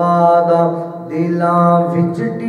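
A man singing a Punjabi naat without instruments, in long held, drawn-out notes. There are two phrases, with a short break for breath about a second in.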